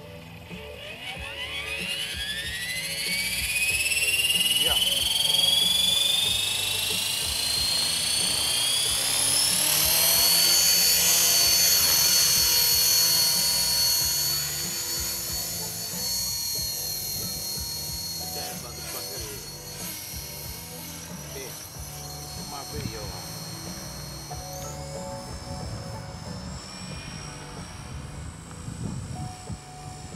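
Electric 450-size RC helicopter (T-Rex 450 clone) spooling up: the brushless motor and rotor whine rises steadily in pitch over about ten seconds, then holds a steady high whine. It grows fainter as the helicopter climbs away, and the pitch steps up suddenly near the end.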